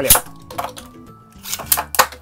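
Two Beyblade Burst spinning tops launched by ripcord into a plastic stadium: a sharp rip and clack as they drop in, then scattered clicks and clinks as they spin and knock against each other and the bowl, again at about half a second in and near a second and a half.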